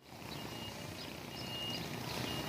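Outdoor ambient noise, a steady hiss that fades in over the first half second, with a few thin, high, level whistles that come and go.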